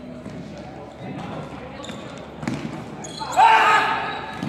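Sneakers squeaking and feet thudding on a sports-hall floor as players run, echoing in the large hall. Near the end comes a short, loud shout from a nearby player.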